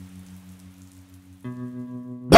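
Steady rain hiss under a sustained, low held musical chord; a fuller, richer chord comes in about a second and a half in.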